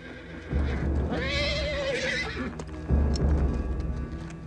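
A horse whinnies about a second in: one wavering call, rising then falling, that lasts about a second and a half. It sits over a film score with deep, heavy low beats, the loudest of them about three seconds in.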